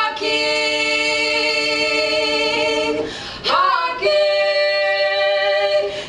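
Two women singing a cappella in harmony, holding one long chord, then after a brief break about halfway through, holding a second long chord.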